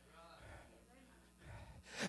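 Near silence: room tone with a faint low hum and a faint voice in the background.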